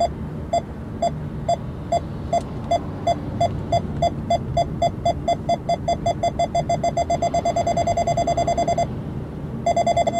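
Nissan Leaf ProPilot hands-off warning: a single-pitched beep repeating faster and faster, from about two a second to a rapid run. It stops briefly near the end, then starts again. It is the car's alarm that the driver is not holding the steering wheel, heard over the low road rumble in the cabin.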